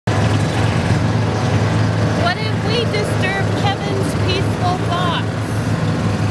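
Gator utility vehicle's engine running steadily with a low hum as it drives along a dirt trail. Short pitched chirps or voice sounds come over it from about two seconds in until near the end.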